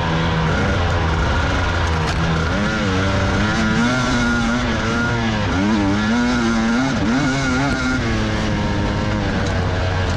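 Dirt bike engine being ridden hard over rough desert trail, its revs rising and falling again and again as the throttle is worked.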